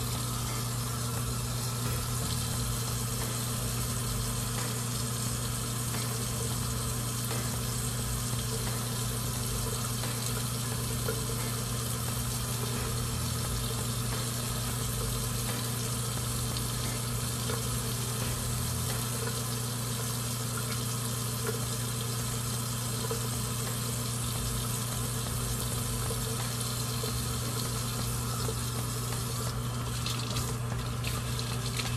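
Water running steadily from a bathroom tap into the sink, an even hiss with a low steady hum beneath it.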